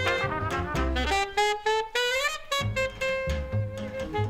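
Live jazz quintet playing: trumpet and alto saxophone over piano, double bass and drums. One horn holds a long steady note while the other plays a moving line, with plucked bass notes underneath.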